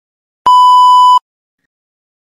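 A single loud electronic beep: one steady, pure tone lasting under a second, starting about half a second in. It is the cue to begin preparing the answer.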